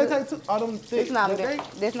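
A person talking, the words missed by the transcript, over a faint steady sizzle of food frying.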